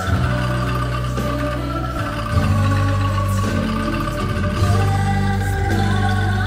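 Angklung ensemble playing a slow hymn tune together with singing and a held low accompaniment, the chords changing every couple of seconds.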